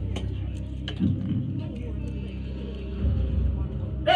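A marble rolling down a homemade cardboard marble-run track: a steady low rumble, with a few sharp clicks in the first second.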